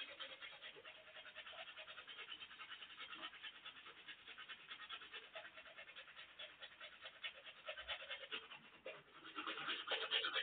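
Manual toothbrush scrubbing teeth in quick, rhythmic back-and-forth strokes, several a second. The strokes are faint and grow louder near the end.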